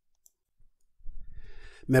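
Dead silence for about a second, then faint low room noise from the recording. A man's voice begins speaking just before the end.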